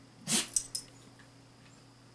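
A saluki making one short, breathy sound while playing, followed by two quick clicks.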